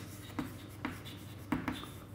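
Chalk writing on a chalkboard: faint scratching of the chalk stick, with a few light taps as it strikes the board.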